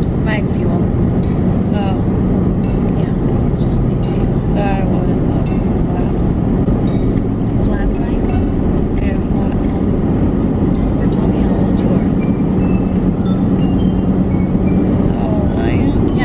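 Steady low rumble of road and engine noise inside the cabin of a moving car, with faint clicks near the end.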